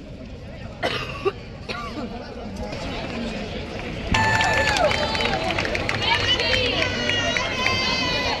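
Low audience chatter, then, about four seconds in, a woman begins singing, holding long notes that slide and waver with vibrato.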